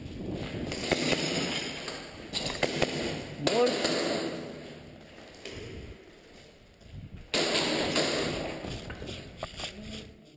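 Footsteps and gear rustle of a player moving fast over a debris-covered concrete floor, coming in several rough bursts of noise, with a brief voice about three and a half seconds in.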